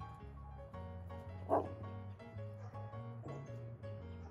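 Background music with steady notes, and one short snarl from a wolf dog about a second and a half in, with a fainter one later: a wolf dog guarding a deer head from the others.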